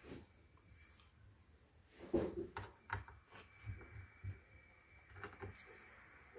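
Faint, scattered clicks and light knocks of a small screwdriver working screws out of a laptop's bottom cover, starting about two seconds in.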